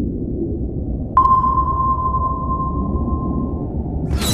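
Record label's sound logo: a steady low drone with a single sonar-style ping about a second in, a clear tone that rings out and fades over a couple of seconds.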